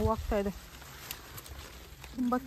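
A voice speaking for about half a second, then only faint, steady background noise.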